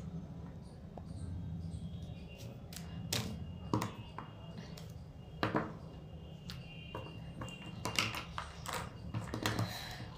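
Plastic connector pens being handled: scattered light clicks and taps of plastic, irregular and a second or so apart, over a low steady hum.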